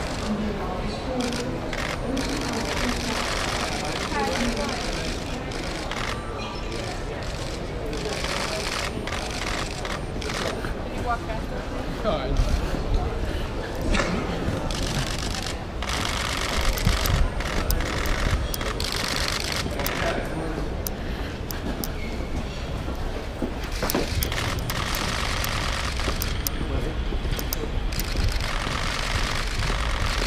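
Busy airport arrivals hall: indistinct voices and crowd chatter, luggage trolleys rolling over tiled floor, and scattered bursts of rapid clicks typical of photographers' camera shutters.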